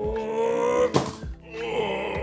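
A man's long, slightly rising groan of distress, then a thump about a second in, with music underneath.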